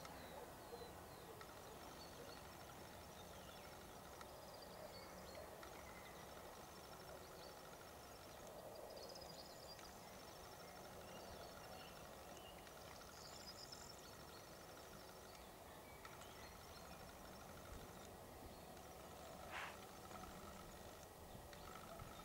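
Near silence: faint open-air background with a few faint, high-pitched bird chirps scattered through it and one short, faint sound near the end.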